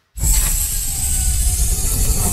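Intro sound effect for an animated logo: after a split second of silence, a loud, steady hiss starts suddenly with a deep rumble beneath it.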